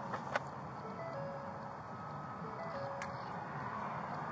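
A slow run of plain electronic tones stepping up and down in pitch like a simple melody, over steady vehicle and traffic noise, with a sharp click near the start and another about three seconds in.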